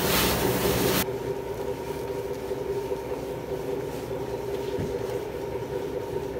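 Pressure washer spraying water into a car's engine bay with a loud hiss that cuts off abruptly about a second in, then a steady machine hum runs on.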